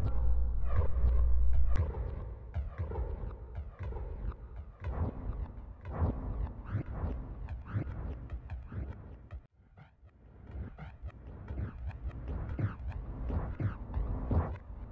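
Vinyl record scratching on a turntable: a run of short back-and-forth scratch strokes at about two a second, with a brief break about nine and a half seconds in. Deep bass carries over in the first couple of seconds.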